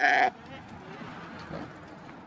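A sheep bleats once, briefly, right at the start, then only a quiet background of the pen remains.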